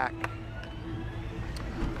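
A car engine running close by as a steady low hum, with street traffic noise around it.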